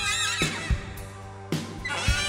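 Live band with a saxophone playing a wavering, bending line that falls away about half a second in. Then comes a brief sparse stretch with a few drum hits, and a rising sweep leads back into the full band just before the end.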